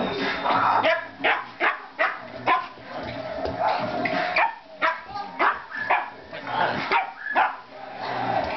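Two dogs play-fighting, with a fast run of short barks and yaps, about two a second.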